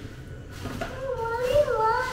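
A young child's high-pitched voice, wordless and drawn out, rising and falling in pitch through the second half.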